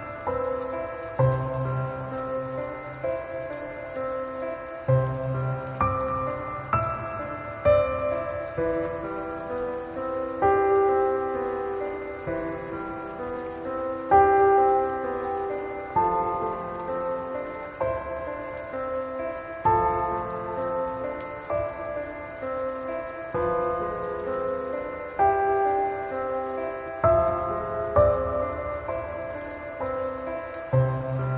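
Slow, calm piano music, its notes changing about every second with deeper bass notes every few seconds, laid over a steady hiss of rain.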